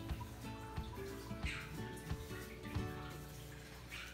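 Background music with sustained held notes over a soft low pulse.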